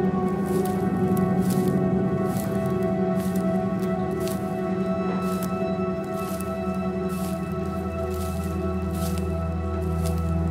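Dark ambient music: sustained drone tones, with short hissy noises recurring about twice a second and a deep bass tone swelling in near the end.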